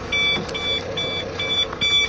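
Dump truck cab warning buzzer beeping steadily and rapidly, about two and a half beeps a second, over a faint steady hum, while the PTO is still engaged.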